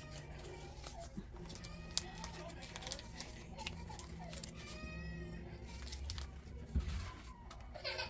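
Faint, short high-pitched calls from a baby in the background, a few times, over soft rustling and small clicks of paper bills and plastic binder pockets being handled.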